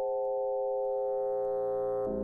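Eurorack modular synthesizer patch built around an E352 Cloud Terrarium wavetable oscillator, holding a steady chord of pure, sine-like tones. Brighter upper tones fade in about halfway through.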